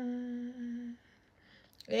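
A woman's voice holding one long, steady hummed note that fades out about a second in. A new wavering sung note starts just before the end.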